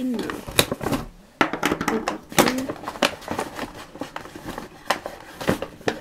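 Lip-balm packaging being handled and opened by hand: irregular rustling and crinkling with several sharp clicks as the lip balms are taken out.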